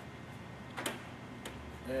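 Light handling clicks as a carbon fiber sheet is set in place over steel rule dies on a roller die cutting press: one sharp click a little under a second in and a fainter one shortly after, against a quiet background. A man's voice starts right at the end.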